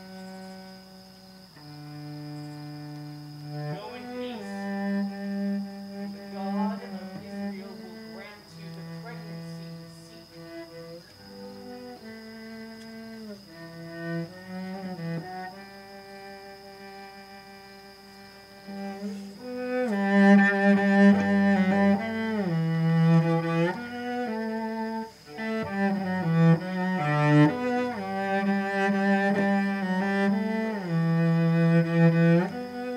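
Cello playing a slow melody of held bowed notes that slide between pitches, growing noticeably louder about two-thirds of the way through.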